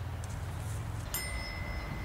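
A single bell-like chime, struck sharply about a second in and ringing as one clear held tone for about a second, over a low steady rumble.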